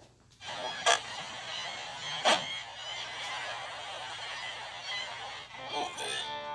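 Logo-animation sound effects: a steady hiss with two sharp swooshing hits about a second and a half apart, the second sweeping down in pitch.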